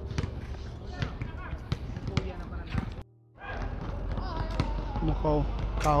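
Basketballs bouncing on an outdoor concrete court, a string of sharp thuds, with players' voices. About three seconds in the sound cuts out briefly and gives way to a steady low rumble and voices.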